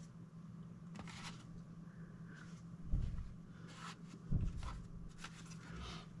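Faint handling noise as a metal-cased ATX power supply is turned over in the hands: light rubbing and clicks, with two soft low thumps about three and four and a half seconds in, over a faint steady low hum.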